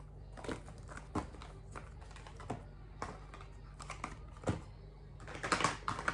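Scattered light clicks and taps of small product boxes and packets being handled and set down, with a short burst of packaging rustle near the end.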